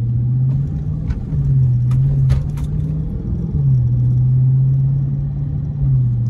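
Dodge SRT 392's 6.4-litre HEMI V8 heard from inside the cabin while driving. The engine note climbs about a second in, drops back about three and a half seconds in and then holds steady, with a few light clicks in the first half.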